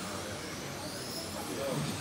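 Radio-controlled touring cars running on a carpet track: a steady hiss of motors and tyres, with a faint high whine that rises and levels off as a car passes near.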